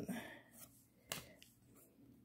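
Quiet handling of a stack of 2021 Topps baseball cards, with one light, sharp click about a second in as a card is slid off the front of the stack and tucked behind.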